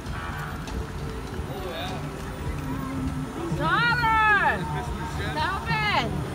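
Parade vehicles driving slowly past with a low, steady engine hum. About four seconds in, and again near the end, someone calls out in a high-pitched voice, each call sliding down in pitch.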